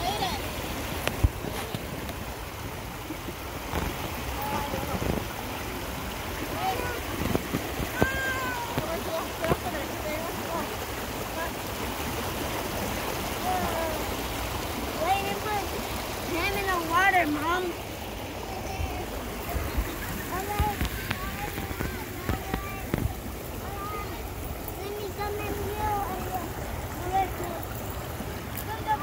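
Water rushing steadily over rocks in a shallow stream, with high children's voices over it at times, busiest past the middle.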